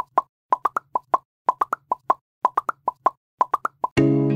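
An edited-in intro sound effect: quick plopping pops in bursts of about five, roughly one burst a second, with dead silence between bursts.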